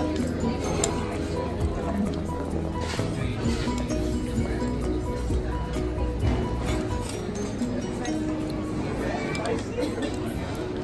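Cutlery clinking against ceramic bowls and plates, over music and the murmur of other diners' talk.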